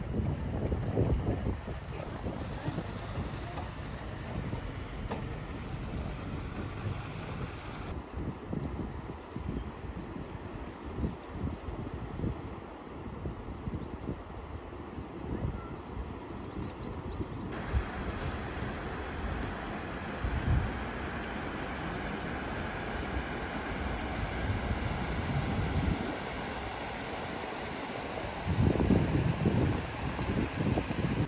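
Wind buffeting the microphone in irregular gusts over a steady outdoor hiss. The background changes abruptly twice, and the buffeting is strongest near the end.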